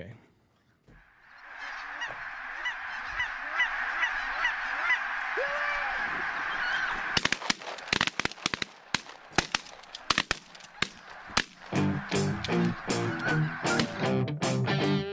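A large flock of geese honking together, a dense clamour of short repeated calls. About seven seconds in, a quick irregular run of sharp cracks cuts across it, and shortly before the end electric guitar music starts.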